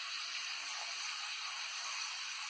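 Potato slices deep-frying in very hot oil in a steel kadhai on a high flame, giving a steady sizzle. The chips are at the stage where they are just starting to colour.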